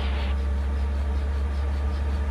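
A 1957 Bell 47 G-2 helicopter's Lycoming VO-435 piston engine and rotor running on the ground as a steady, deep drone, at low RPM with the engine and rotor needles joined after a clutch check.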